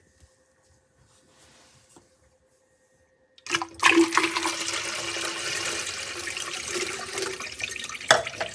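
Near silence, then about three and a half seconds in a 5-inch miniature Jensen toilet flushes suddenly: water rushes down from its tank into the bowl over a steady low tone.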